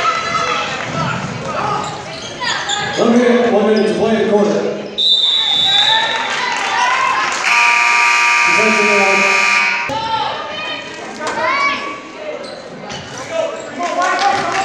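A referee's whistle blows once, briefly, about five seconds in. A couple of seconds later the gym's scoreboard buzzer sounds steadily for about two seconds. Voices shout from the court and stands, and a basketball bounces.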